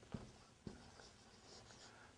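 Faint scratching of a marker writing on a whiteboard, with two short strokes in the first second.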